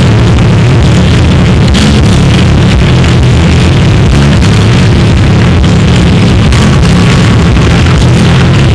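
Live nu-metal band playing a heavy, distorted instrumental passage, bass and guitar low and thick under drum hits. The recording is badly brickwalled, so the whole mix is crushed into a dense, steady wall of noise.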